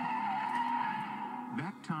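Car tyres screeching in a skid, one long wavering squeal, heard from a movie trailer's soundtrack through a TV speaker. A voice starts speaking near the end.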